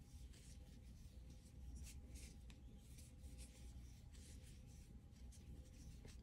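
Near silence: faint rustling and light scratching of a metal crochet hook drawing cotton yarn through stitches, over a faint steady hum.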